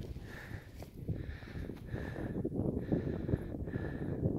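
Wind buffeting the microphone on an open summit: an uneven low rumble that rises and falls with the gusts.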